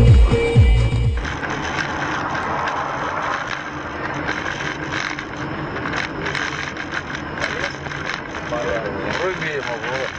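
Music with a heavy beat for about the first second, then steady road and engine noise heard from inside a moving car. A man's voice comes in near the end.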